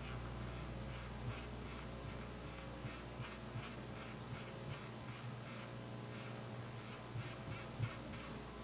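A series of short, irregular clicks and ticks, thicker in the second half and loudest just before the end, over a steady low electrical hum in the room.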